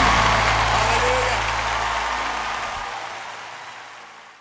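The final held chord of a live gospel praise band's song fading out: a steady low chord under an even wash of noise, with a voice briefly singing about a second in, dying away steadily over the few seconds.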